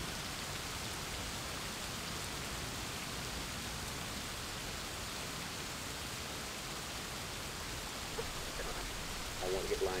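Steady heavy rain, an even hiss with no breaks. Near the end a voice starts, likely from a television.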